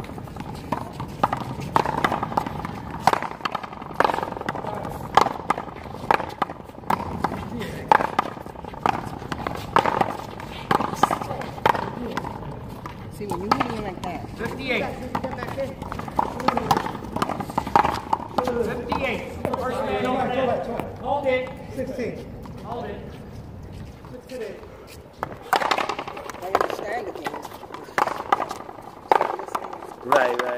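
A ball being struck by paddles and smacking off a wall in a rally: irregular sharp knocks, with players' voices calling out, clearest in the middle and near the end.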